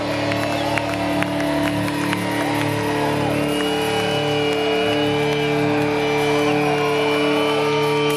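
Live rock concert sound heard from the crowd: two steady held tones with a few scattered drum hits, under audience whoops and cheers.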